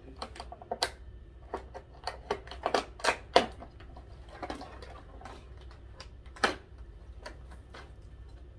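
Irregular sharp crackles and clicks of an LED light strip and its clear plastic packaging being handled and pulled out, with the loudest snaps about three and a half seconds in and again about six and a half seconds in.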